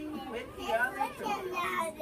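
Voices talking, children's among them, with no other sound standing out.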